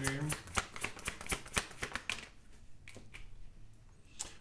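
A deck of tarot cards being shuffled by hand: a quick run of card-flicking clicks for about two seconds, thinning out and stopping near the end.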